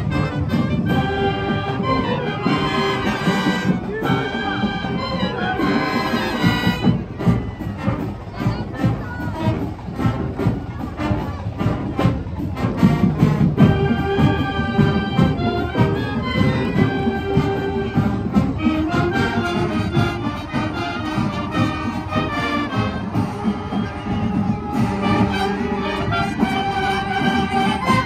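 Marching band of clarinets, flutes, saxophones, trumpets and trombones playing a merengue medley over a steady percussion beat. The music ends right at the close.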